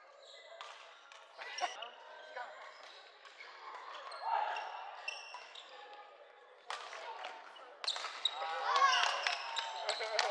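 Badminton play on a wooden sports-hall court: sharp racket strikes on the shuttlecock and squeaking sneakers, sparse at first and then a quick rally for the last few seconds, under a hum of voices in the hall.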